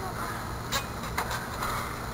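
Quiet outdoor background noise with two faint short knocks, about three quarters of a second and a little over a second in.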